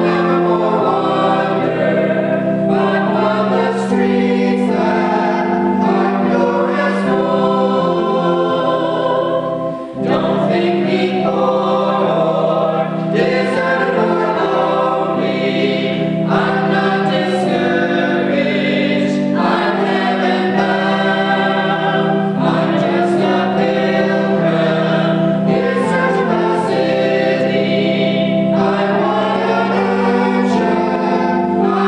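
A small mixed choir of men's and women's voices singing a hymn in harmony, in long held phrases, with a brief break between phrases about ten seconds in.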